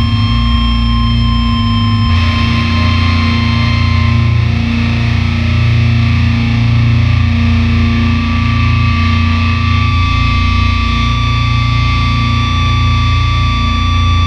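Rock instrumental music of distorted electric guitar through effects, with long held droning notes over a heavy bass; the sound thickens about two seconds in.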